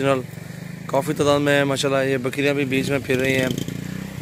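A man's voice talking over a steady low engine hum; the talking pauses briefly about a second in.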